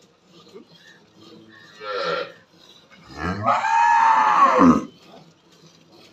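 A cow moos twice. The first is a short call about two seconds in. The second is a long, loud moo that rises and then falls in pitch, beginning about three seconds in.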